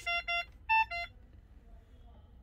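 Magnamed Oxymag ventilator's alarm sounding: five short electronic beeps in quick succession within the first second, the fourth higher in pitch, signalling a high-volume alarm.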